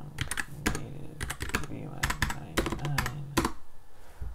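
Typing on a computer keyboard: a quick, uneven run of keystrokes that stops shortly before the end.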